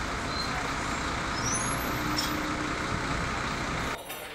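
Steady road traffic noise on a city street, with a double-decker bus running close by.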